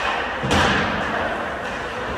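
One heavy thud against the rink's boards about half a second in, over the steady noise of a hockey game in an indoor rink.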